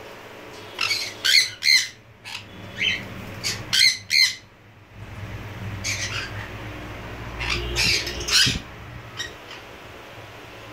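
Jenday conure screeching: a series of loud, harsh, shrill squawks in two bouts, with a short pause about five seconds in and a few fainter calls near the end.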